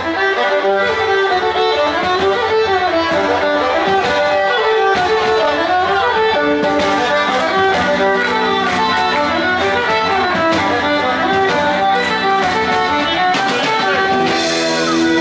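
Live Occitan folk band playing an instrumental passage: electric violin carrying the melody over guitar, bass guitar and drum kit, with the drums more prominent in the second half.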